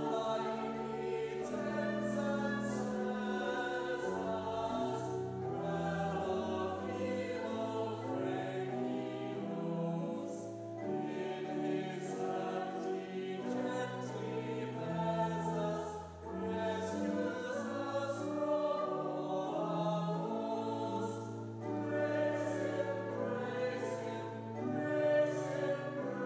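Congregation singing a hymn with pipe organ accompaniment, in sustained phrases with a low held bass line and short breaths between phrases every five or six seconds.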